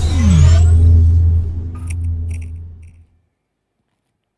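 Logo-reveal music sting: a deep bass hit with a falling swoop and a rising whoosh, then a few short, bright glittering accents about two seconds in. It fades out at about three seconds.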